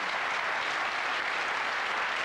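Studio audience applauding steadily, a dense even clapping without voices over it.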